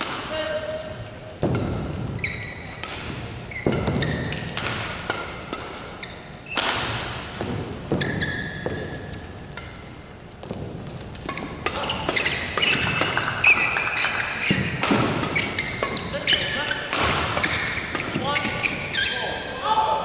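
Men's doubles badminton play in a large hall: sharp racket strikes on the shuttlecock and short squeaks of shoes on the court mat, busiest in the second half. Voices ring through the hall.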